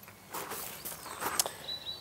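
Quiet outdoor ambience with a few soft scuffs and faint bird chirps.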